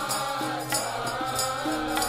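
Sikh kirtan: harmoniums holding steady reed chords under a sung, chant-like melody, with tabla strokes keeping the beat.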